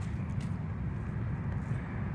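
Steady low background rumble with a faint hiss above it, without any distinct event.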